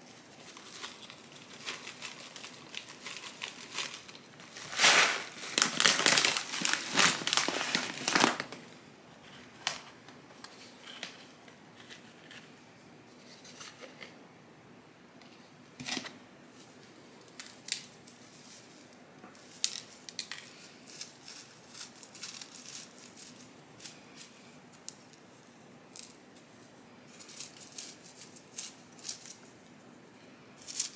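Chunky potting mix poured from a plastic bag into a pot: a dense rustling crackle lasting about four seconds, loudest about five seconds in, with the bag crinkling. Lighter rustles and scattered small clicks follow as the bag and pots are handled.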